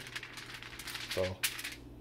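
Aluminium foil crinkling and rustling under a hand rubbing oil over it, with a few sharp crackles.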